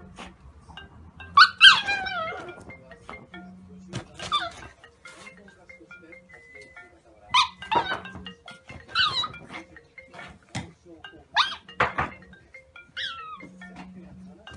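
A Shiba Inu giving several high whining cries that rise and fall, in reaction to a ringing smartphone. The phone's vibration buzzes in short repeated pulses beneath them.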